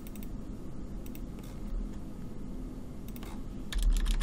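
Computer keyboard keystrokes and mouse clicks while a spreadsheet formula is edited: a few scattered taps, then a quicker run of them near the end, over a steady low hum.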